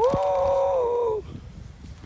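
A man's high, drawn-out "woo" cattle call, held steady for about a second and dropping in pitch as it ends.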